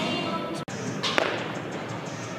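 Reverberant noise of a large indoor sports hall with faint background music, and one sharp knock about a second in.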